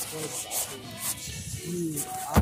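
Handling noise from a phone being swung around: repeated scratchy rubbing and scuffing against its microphone.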